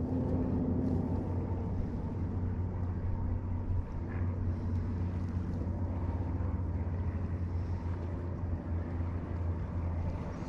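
A steady low motor hum that holds level throughout.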